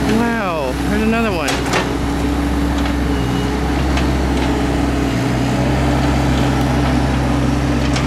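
Bobcat mini excavator's diesel engine running steadily as it digs, with a couple of sharp knocks about a second and a half in.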